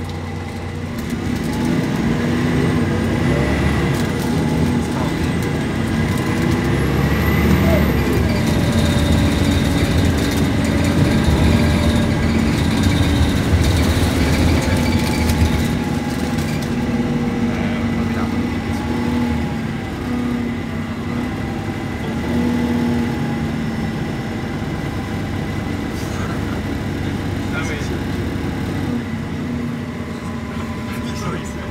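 Inside a Plaxton Centro bus on the move: a steady engine and road rumble that gets louder about a second or two in as the bus picks up, then stays even.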